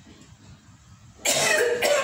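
A person coughing close by, two loud coughs in quick succession starting a little over a second in.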